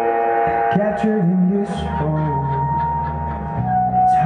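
Live indie folk band playing an instrumental passage: electric guitar notes over held steady tones, with a low bass line entering about halfway through and light, regular ticking strokes.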